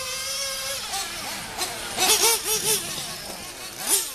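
Small nitro engine of a radio-controlled truggy running at a steady high pitch for about the first second, then fainter, with a few short rising-and-falling sounds about halfway in.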